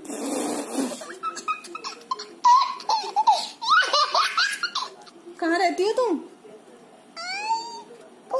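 A small child laughing and giggling in several bursts through the middle, with a short high squeal near the end.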